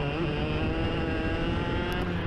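IAME X30 two-stroke kart engine running on track, its pitch holding fairly steady with a slight waver.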